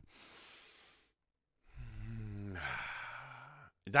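A man draws a breath, then lets out a long voiced sigh that falls in pitch, catching his breath.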